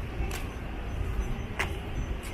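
City street traffic: a steady low rumble of passing cars, with two brief sharp clicks.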